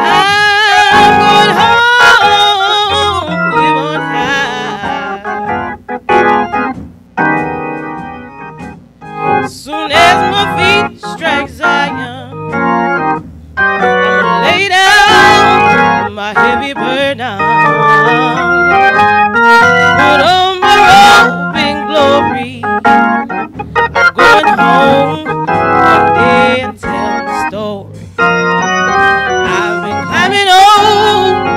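A woman singing a gospel song solo, with strong vibrato and long, drawn-out notes that bend and run between pitches, over organ accompaniment.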